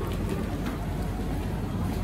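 Steady rumbling background noise of a large store, with a couple of faint light knocks.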